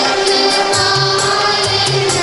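Church choir singing a hymn with instrumental accompaniment: held notes over a bass line, with a regular beat of light percussion strokes.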